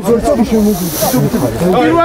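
A man talking steadily, with a short hiss about a second in.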